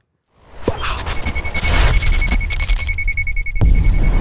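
Channel logo intro sting: music with heavy deep bass, a steady high beep held through most of it, and sharp hits about half a second in and again near the end.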